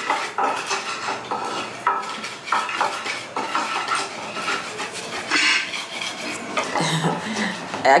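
Pepper and onion being ground by hand in a ridged earthenware grinding bowl: a steady, irregular run of scraping and knocking against the clay.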